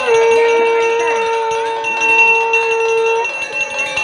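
A single long note, held steady for about three seconds and then cut off, over faint crowd voices. A second, higher steady tone joins about halfway through.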